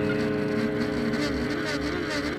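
F2 racing sidecar's engine running hard at steady revs, heard onboard, mixed with a music track holding a sustained chord.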